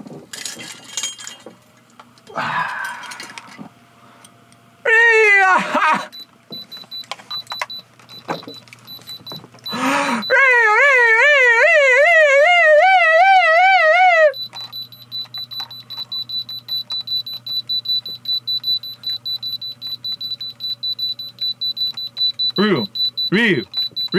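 Handheld electronic diamond testers sounding a steady high-pitched tone with their probes held against a diamond grill, the alert that signals a diamond reading. A loud warbling vocal wail runs over it for about four seconds in the middle, and rhythmic chanting starts near the end.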